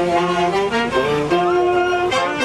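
Festival wind band with saxophones and brass playing a pasacalle melody in sustained, shifting notes.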